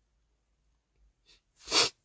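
A woman's single short, sharp burst of breath near the end, loud against a near-quiet background, in the manner of a sneeze or a sob.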